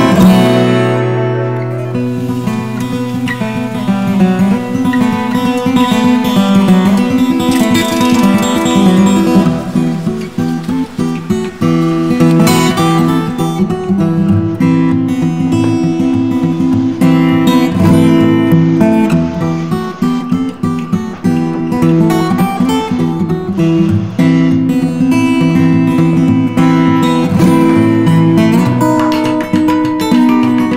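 Background music: acoustic guitar playing.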